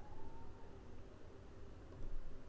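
Faint background room noise with a low hum, heard in a pause between words. A faint wavering tone sounds briefly near the start.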